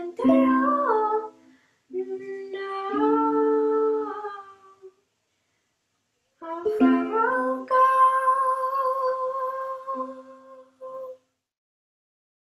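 A girl singing solo to her own ukulele in three phrases, the last a long held note about eight seconds in, as the song ends; it stops abruptly shortly before the end.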